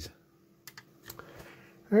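Near silence with a few faint, short clicks and a faint steady tone underneath.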